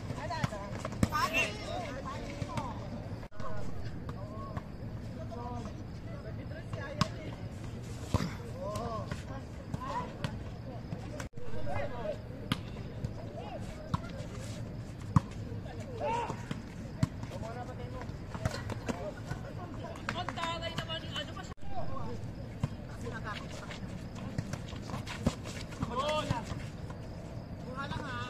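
Players' voices calling out during a volleyball game, with sharp smacks of the ball being struck now and then.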